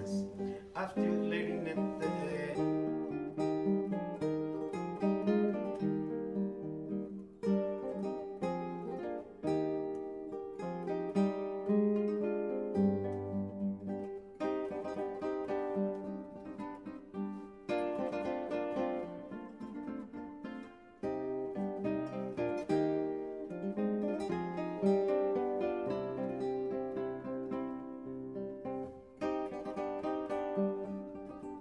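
Background music: an acoustic guitar playing a plucked melody over sustained chords.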